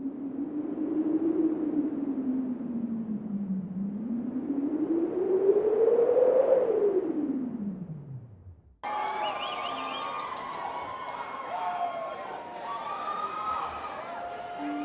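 Sound-effect opening of a track, not yet music: a hollow, noisy howl that slides up and down in pitch and dies away at about eight and a half seconds. Then a busy bed of many gliding, warbling tones starts abruptly.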